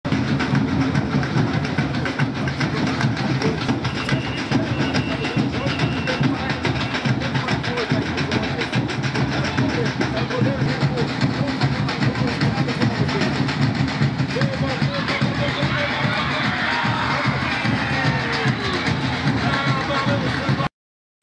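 Football supporters' bass drums (surdos) beating continuously under a crowd chanting and singing on the terraces, a dense, loud din.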